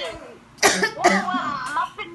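A person coughs once, sharply, about half a second in, after a brief lull; voices then carry on talking.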